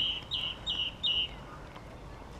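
A small songbird calling a quick run of short, high, slightly falling chirps, about three a second, that stops a little over a second in.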